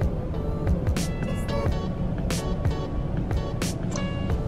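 A song playing on the car stereo, with sustained notes and a regular beat, over the low rumble of the car on the road.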